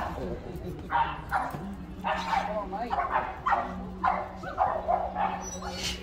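Dogs barking and yipping, a string of short barks coming roughly two a second.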